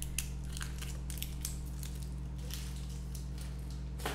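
Faint scattered rustling and small clicks of objects being handled, over a steady low hum.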